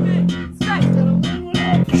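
Electric guitar and bass guitar warming up through amps, with held low bass notes that break off briefly twice.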